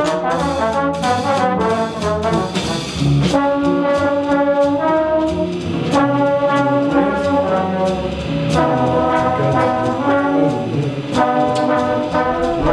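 Trombones playing a jazz passage: quick moving notes at first, then longer held notes from about three seconds in.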